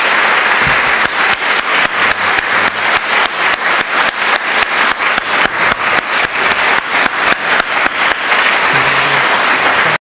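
Audience applauding steadily, with individual claps standing out.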